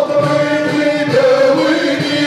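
Men's chorus chanting a Sufi Aissawa hymn in unison, holding long notes that glide slowly in pitch, over a beat of hand-struck frame drums.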